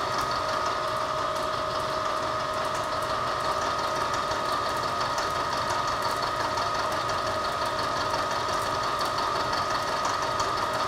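Vertical milling machine taking a finishing cut with a shell mill across a steel steering arm: a steady whine from the spindle and cutter, with fine rapid ticking from the cutter teeth and chips.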